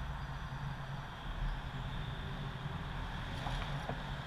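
Steady low rumble of wind on the microphone and flowing river water around a kayak, with a few faint clicks near the end.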